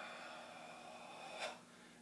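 A man's long, slow, controlled breath out, timed with muscle tension in a karate kata, fading gradually and ending with one short, sharp breath about a second and a half in.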